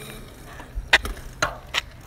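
Three sharp clicks, unevenly spaced about half a second apart, over a faint low hiss.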